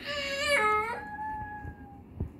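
A young girl crying: a wavering wail that shifts pitch about half a second in, then trails off into one long, thin held note that fades just before the end.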